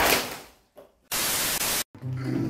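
A sudden burst of hissing noise that fades over about half a second, then a flat block of static-like hiss that cuts off abruptly near the end: an edited static noise effect.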